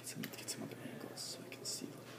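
Faint whispered speech with sharp hissing 's' sounds, two of them standing out about a second in and near the end, over a steady low hum.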